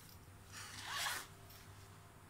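A zipper on a small fabric bag pulled open in one quick pull lasting under a second, about halfway in.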